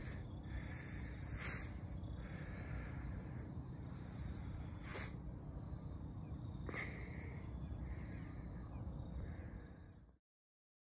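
Insects singing in grassland: a steady high buzz with shorter calls coming and going, over a faint low rumble. Three soft clicks come at about a second and a half, five seconds and seven seconds in.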